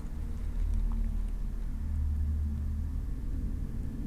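A low, steady background rumble that swells a little in the middle and then eases. It is an unwanted noise in the room, of the kind a passing vehicle outside makes.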